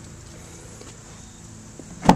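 Quiet, steady background noise with a faint low hum and a couple of faint small clicks; no distinct event.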